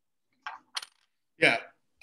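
Two brief faint clicks in an otherwise silent pause, then a voice says "yeah".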